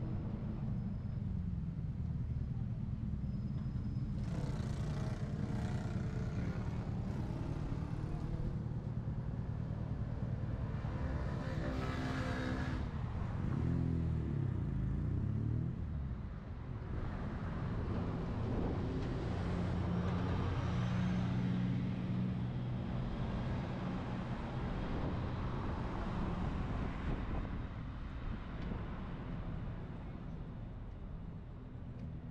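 City street traffic: a steady rumble of cars passing. About ten seconds in, one vehicle's engine rises in pitch as it accelerates by.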